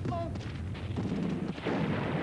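Battle gunfire: rapid rifle shots following a man's shout that trails off just after the start, with a heavier blast about three-quarters of the way through.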